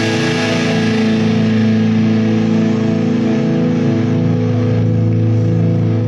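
Electric guitar letting a final chord ring out: one held chord, steady in loudness, its treble slowly fading.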